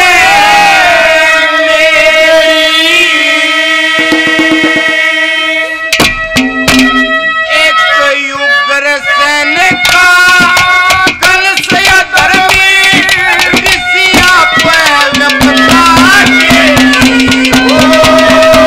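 Live Haryanvi ragni: a male folk singer holds a long, wavering note with steady melodic accompaniment. About six seconds in, hand drums come in with a rhythm beneath the continuing singing.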